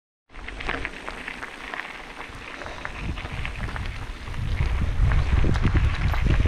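Mountain bike tyres rolling over a gravel track: a steady crackle of small stones under the tyres, with wind rumble on the microphone growing louder after about three seconds as the bike picks up speed.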